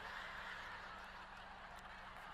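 A large audience laughing together, heard at a distance as a steady wash of laughter.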